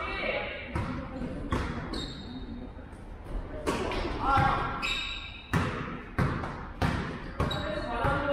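A basketball bouncing on an indoor gym floor in a reverberant hall: several separate bounces, coming quicker, about every half-second, in the second half, mixed with players' voices calling out.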